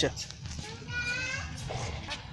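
Faint background chatter of visitors and children, with a brief high-pitched call about a second in.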